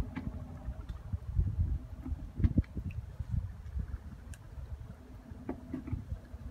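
Wind buffeting the microphone: an uneven low rumble that swells and drops in gusts, with a few faint clicks.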